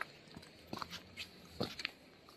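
Footsteps crunching over sand and rounded river pebbles, several uneven steps.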